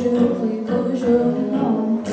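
A girl singing a solo into a handheld microphone, moving through sung notes in a steady phrase.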